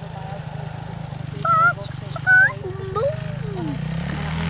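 Distant Suzuki RM-Z450 single-cylinder four-stroke dirt bike engine running at a steady drone. A young child's voice makes a few high-pitched, sliding sounds over it in the second half.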